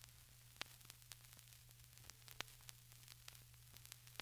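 Near silence: faint surface noise of a lateral-cut 33⅓ rpm transcription disc, irregular clicks and crackle over a low steady hum.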